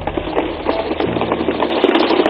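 Members of parliament thumping their desks in approval: a dense, fast clatter of many hands knocking on wooden desks. Low sustained background music notes run underneath.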